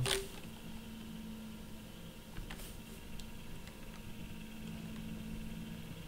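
A computer key pressed once with a sharp click at the start, then a few faint clicks a couple of seconds later over a low steady hum.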